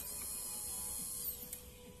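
Electric fuel pump of a 2001 BMW R1200C switched on with the ignition key, running with a high-pitched whine for about a second and a half, then falling in pitch as it winds down and stops. A faint steady hum continues underneath.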